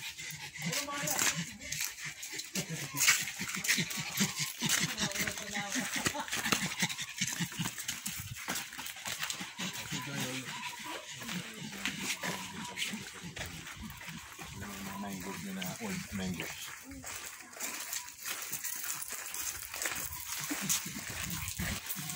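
Sounds from a pug close by, with indistinct voices in the background and many short scuffs and clicks throughout.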